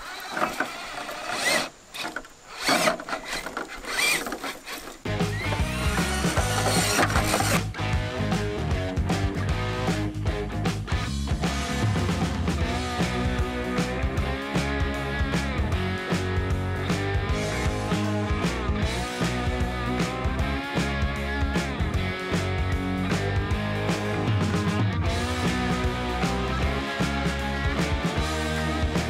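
For about five seconds, a 1/10-scale RC rock-crawler truck climbs over rock with irregular scrapes and clicks from its tyres and drivetrain. Then background music with a steady beat starts and runs on.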